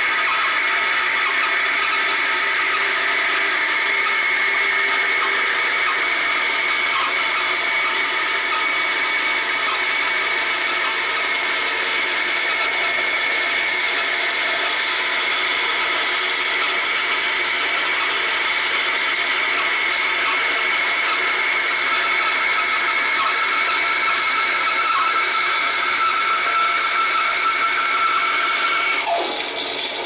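Bandsaw running and cutting through a cedar block, a steady whine with sawing noise. Just before the end the sound changes and drops a little.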